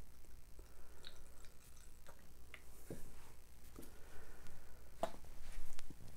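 Faint, scattered light clicks and taps from handling a plastic pour cup and paint bottle while acrylic paint is added to the cup.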